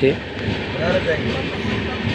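Steady running noise of a moving passenger train, heard from on board, with faint voices in the background.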